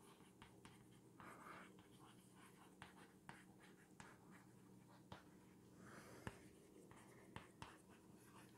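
Chalk writing on a blackboard: faint scattered taps and short scratches of the chalk against the board.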